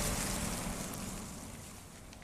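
A rushing, wind-like whoosh fading away steadily: the tail of a speedster's super-speed run, a TV sound effect.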